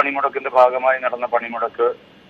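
Speech only: a man talking in Malayalam, with a narrow, phone-like sound.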